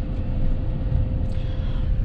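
Steady low rumble of a moving car's engine and tyres on the road, heard from inside the cabin, with a faint steady hum above it.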